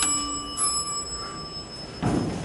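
Elevator car's Epco bell ringing: a metallic ding, struck again about half a second in, its ring dying away over the next second or so.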